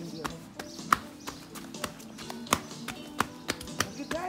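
Running footfalls and knocks on a hard surface: sharp, irregular taps, a few a second, with one louder knock about a second in and another past the middle.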